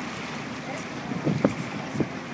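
A boat's engine runs steadily under wind buffeting the microphone, with water noise. A brief louder sound comes about one and a half seconds in.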